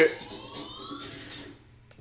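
A faint rising tone with several parallel pitches glides upward for about a second, then cuts off into near silence. It follows the tail end of a man's exclamation.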